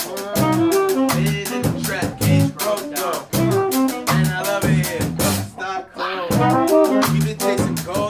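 A live band plays a hip-hop groove: a drum kit beat, a repeating bass line and a saxophone. A little past halfway the drums drop out for about half a second, then the groove comes back in.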